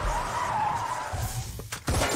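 Film sound effect of a car's tyres squealing in a skid: a wavering squeal for about the first second, over a low rumble. A couple of sharp bangs near the end.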